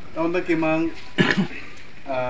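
A man's voice speaking, broken by a short, rough burst a little past the middle.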